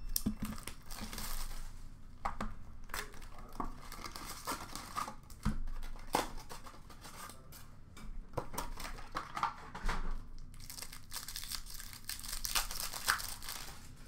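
Trading-card pack wrappers being torn open and crumpled, with a cardboard hobby box being handled: a run of irregular crinkling, tearing rustles and small clicks.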